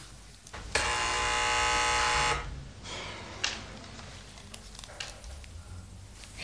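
Electric door buzzer sounding once, a steady harsh buzz lasting about a second and a half.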